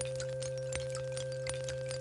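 Electronic drone music: a steady low sine tone held together with a quieter higher tone, with scattered small clicks and crackles throughout.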